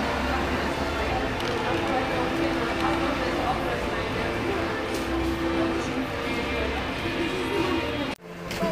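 Music with long held notes and a bass line, mixed with indistinct voices.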